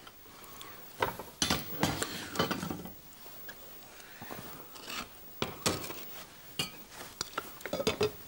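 Kitchen clatter: scattered clinks and knocks of a knife and carving fork working a ham roast on a wooden cutting board, along with pots being handled.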